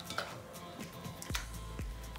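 Potato masher pressed down into canned whole tomatoes in a ceramic bowl, mashing them: about four soft knocks and squelches roughly twice a second, over faint background music.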